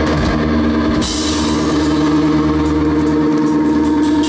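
Live rock band playing loud: a held guitar chord rings steadily over drums, with a cymbal crash about a second in.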